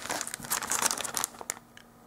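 Plastic candy-kit packet crinkling as it is handled and turned over in the hand, dying away about a second and a half in.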